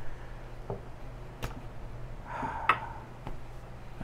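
A few light clicks and knocks of a metal cocktail shaker being handled, its small cap taken off and set down on the table, with a short scraping sound between them. A low steady hum runs underneath.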